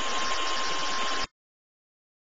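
A steady hiss with a thin, high, constant whine running under it, which cuts off suddenly about a second and a quarter in, leaving dead silence.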